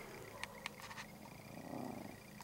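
A Chihuahua growling softly and steadily, with a few light clicks over it.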